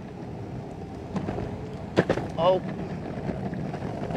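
Electric skateboard's 105 mm hybrid wheels rolling over a rough, grooved concrete path: a steady rumble with sharp knocks as the wheels cross the grooves, the loudest about two seconds in.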